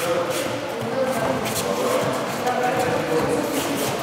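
Indistinct voices echoing in a large training hall, with a few brief sharp smacks in between.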